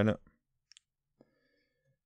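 A few faint computer mouse clicks: two quick clicks just under a second in, then one more a moment later.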